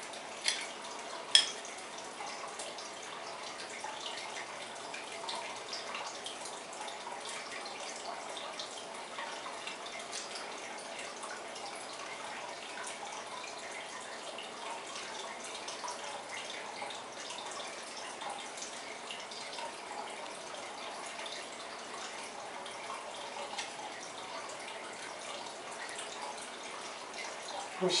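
Quiet, steady room noise with a faint hum, and a sharp click about a second in with a softer one just before it, from hands working with a spoon and bowls of coloured sugar on a cake.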